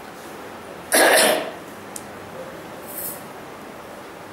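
A single short cough from a man about a second in, over faint steady room hiss.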